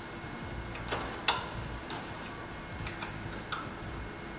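A few light, scattered metallic clicks, the sharpest just over a second in, from an Allen key and gloved hand on the steel bottom tooling of a press brake as its clamping screws are nipped up lightly.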